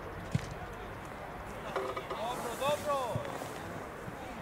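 Football pitch sound: distant shouts from players, in a few rising-and-falling calls through the middle, over a steady outdoor background. A sharp thump sounds about a third of a second in, and a softer one near the end of the calls.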